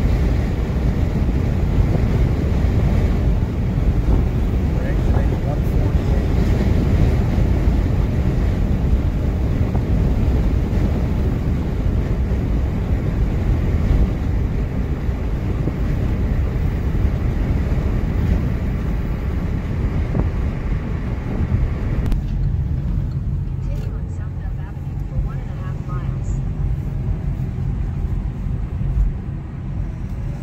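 Steady road and wind noise of a car moving at speed: a deep rumble with a hiss over it. About three-quarters of the way through, the hiss drops away and the noise becomes quieter and duller, as the car slows.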